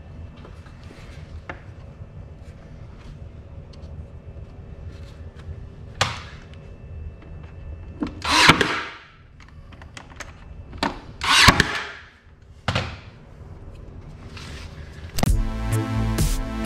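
Workshop tool and wood knocks while wooden strips are fitted into an MDF box frame: a sharp knock, then two loud short bursts a few seconds apart and a smaller one after. Electronic music with a beat starts near the end.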